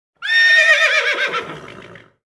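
A horse whinny: one high, quavering call that starts about a quarter second in, then falls in pitch and fades away over about two seconds.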